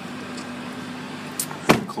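A car door shutting with a single heavy thump near the end, over the steady hum of the idling 2015 Mitsubishi Lancer heard from inside the cabin.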